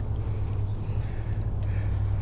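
A steady low rumble, with a few faint, soft breathy rustles over it.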